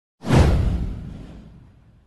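A single whoosh sound effect over a deep boom, hitting about a fifth of a second in and dying away over about a second and a half.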